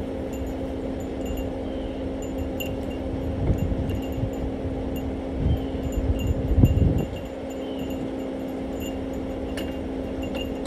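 Light, high chiming notes ringing on and off over a steady low hum, with low rumbling in the middle.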